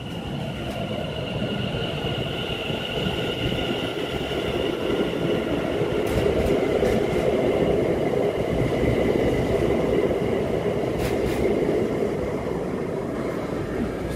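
London Overground Class 710 (Bombardier Aventra) electric multiple unit pulling out of the station past the listener, its traction motors giving a steady high whine over the rumble of the wheels. The sound grows louder over the first several seconds and then holds steady, with a couple of brief sharp clicks.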